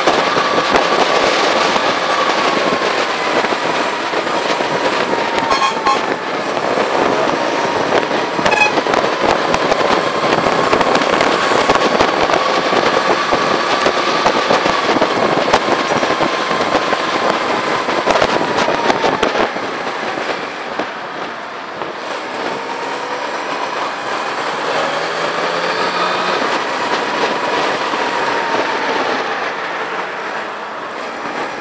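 Motorcycle engine running while riding, its tone drifting slowly up and down with road speed, under heavy wind crackle on a bike-mounted camera's microphone. It eases off about two-thirds of the way through, then picks up again.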